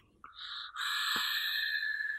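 Air drawn through a Vapor Giant V5S clone rebuildable dripping atomizer with its airflow partly closed: a steady hissing whistle with a slight buzz, swelling to full strength under a second in. The speaker puts the buzz and whistle down to the atomizer's airflow edges not being rounded off.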